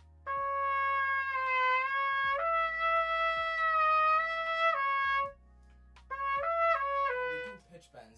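Solo trumpet playing slurred held notes, moving between written D sharp and F sharp and back: a long phrase, then a shorter, quicker repeat about six seconds in. This is the second-valve flexibility slur from the etude's pickup measure.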